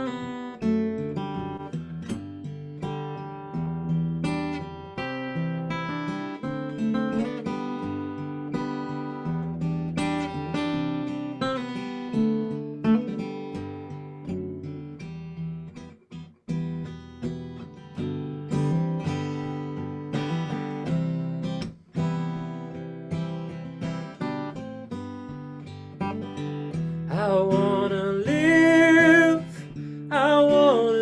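Acoustic guitar playing an instrumental introduction of sustained, ringing chords and picked notes; a man's singing voice comes in near the end.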